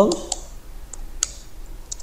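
Computer keyboard keystrokes: about five separate, sharp key clicks at an irregular pace as a short command is typed.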